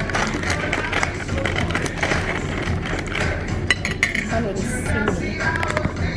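Background music with a steady beat, with two sharp clinks a little past the middle.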